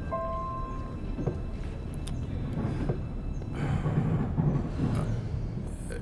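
Low, steady rumble of a train carriage heard from inside the compartment, with rustling and light knocks from about the middle as belongings are handled.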